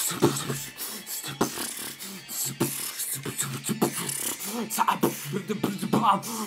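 Solo human beatboxing: a fast run of mouth-made drum sounds, sharp clicks and pops with hissing hi-hat sounds, mixed with short hummed, pitched vocal notes.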